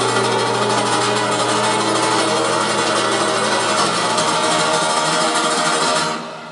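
Amplified acoustic guitar strummed hard and continuously, a dense, steady wash of sound with a low hum under it.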